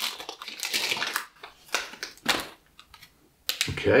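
Scissors snipping open the plastic wrapper of a Brita filter cartridge, the wrapper crinkling in a run of irregular sharp crackles as it is cut and pulled off the cartridge.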